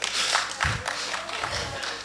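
A congregation's brief reaction in a large room: a wash of crowd noise that fades over about two seconds.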